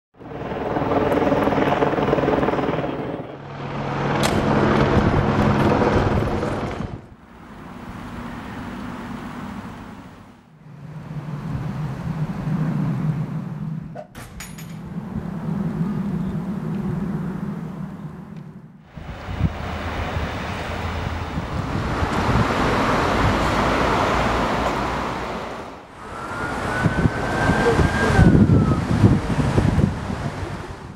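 Street sound with motor vehicle engines running, split into several short segments that cut abruptly from one to the next. A brief high tone rises and falls near the end.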